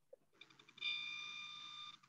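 A faint, steady electronic beep tone, starting just under a second in and held for just over a second.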